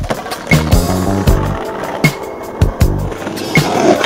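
Skateboard sounds, wheels on pavement and the board's clacks, heard over a music track with a steady drum beat.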